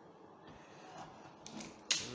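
Faint handling noise while an opened UPS is worked on, with a sharp click near the end.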